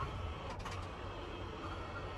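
Electric motor of an LCI Toscana power lift bed running steadily as it lowers the bed platform.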